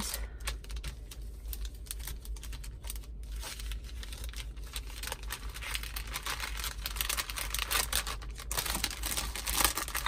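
Clear plastic bag crinkling and crackling as it is handled, with paper cards shuffling inside it. The crinkling gets denser and louder in the second half.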